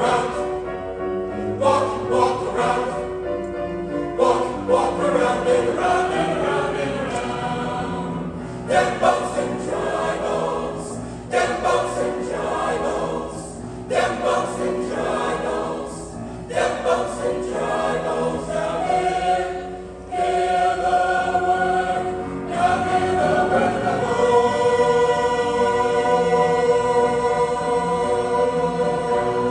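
Mixed choir singing a gospel spiritual arrangement in short, rhythmic phrases with brief breaks. Near the end it settles into one long held chord.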